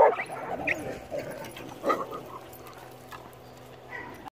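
Dogs barking: a loud bark right at the start and another about two seconds in, with quieter short dog sounds between.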